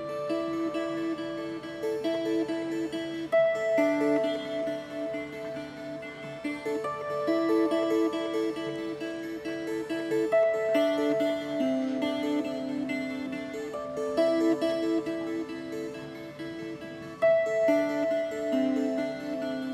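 A 15-string kannel, the Estonian board zither, played solo: plucked notes ringing together over low sustained tones, in repeating melodic figures with stronger plucked accents now and then.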